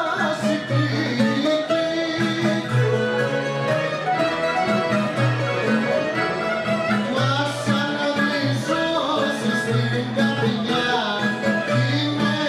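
A rebetiko band plays live, with bouzouki, baglamas, guitar, accordion and violin over a steady rhythm.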